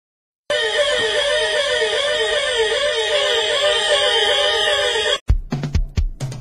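Reggae intro: a dub siren effect, an electronic tone warbling up and down about three times a second, holds for over four seconds, then cuts off suddenly. A drum kit comes in near the end with bass drum and snare hits.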